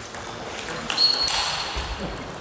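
Table tennis rally: the ball clicking sharply off bats and table several times in quick succession, ending about a second in. A high squeak of a shoe on the hall floor follows and lasts about half a second.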